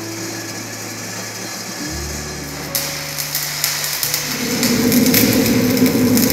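Bench grinder running, its wheel grinding steel with a steady motor hum, the grinding noise growing louder and harsher about three seconds in.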